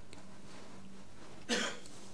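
A single short cough about one and a half seconds in, over a faint steady hum.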